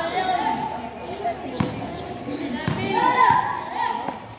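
A basketball bouncing sharply on a concrete court, two distinct bounces about a second apart, with children's and onlookers' voices throughout.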